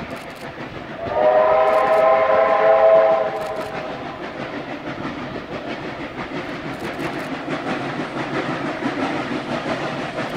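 Steam whistle of NSW Garratt locomotive 6029 sounding one long blast of about two and a half seconds, starting about a second in. Then the locomotive's running sound grows louder as it climbs towards the listener.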